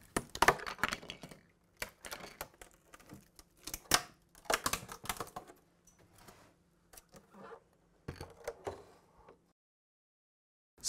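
A cured flax-fibre epoxy chair moulding being prised from its mould with plastic demoulding wedges: irregular sharp cracks and clicks as the part releases from the mould. The loudest cracks come near the start and about four seconds in, and the sound stops abruptly near the end.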